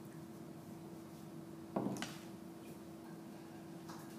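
A wooden rolling pin set down on a worktable: a single knock a little under two seconds in, followed at once by a short crisp click, with a few faint ticks later. A steady low hum lies underneath.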